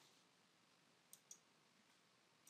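Two faint computer mouse clicks about a second in, close together, against near silence.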